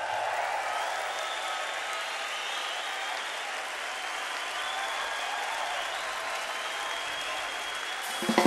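Large concert audience applauding steadily after a song ends.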